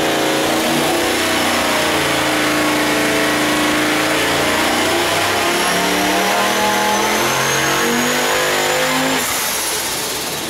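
Single-turbo LS3-based V8 making a full-load pull on an engine dyno on 12 psi of boost. The engine note climbs with rpm while a high turbo whistle rises with it. About nine seconds in the throttle closes and the sound drops away.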